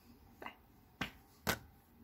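Three short clicks about half a second apart, the first faint and the later two sharper.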